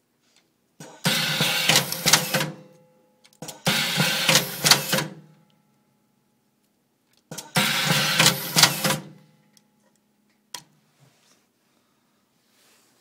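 Plas-Ties XL-8 ring tyer machine cycling: it feeds a twist tie around its 6-inch ring and twists it tight around a cable bundle. Three runs of mechanical noise, each about a second and a half, are followed by a single sharp click near the end.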